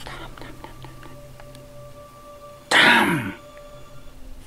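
A man's sudden, loud, breathy vocal burst about three-quarters of the way in, lasting about half a second, its pitch falling away at the end.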